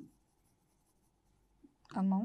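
Chalk writing on a blackboard: a sharp tap of the chalk at the start, then faint strokes. Near the end comes a short hum of a voice.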